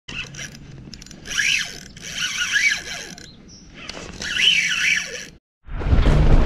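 Fishing reel mechanism whirring and ratcheting in three short bursts, its pitch wavering up and down with each burst.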